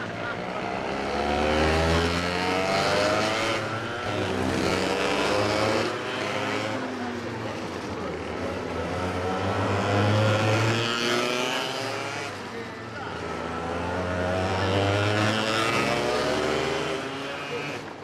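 Two kids' racing kart engines accelerating and easing off around a tight course, the pitch climbing in repeated rising sweeps and dropping back between them. The sound swells as the karts come near and fades as they move away.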